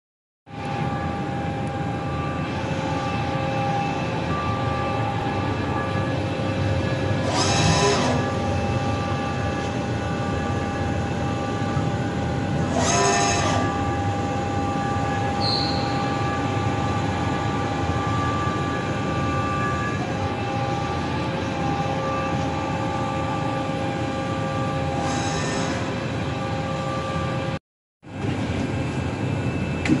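Emag VSC 630 vertical turning machine switched on and idling: a steady mechanical hum with several steady whining tones. Three short hissing bursts come about 8, 13 and 25 seconds in. The sound cuts out briefly a couple of seconds before the end.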